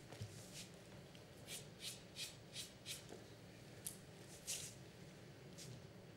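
Billiard chalk being rubbed on a cue tip: a run of faint, quick scratches, then two more about a second later.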